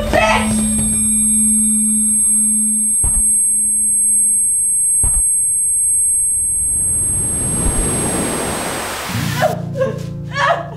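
Film sound design: a steady high-pitched ringing tone over a low hum, like ear-ringing after a blow, broken by two dull thuds about two seconds apart. A rushing noise swells in the second half and gives way near the end to low bowed-string music and crying.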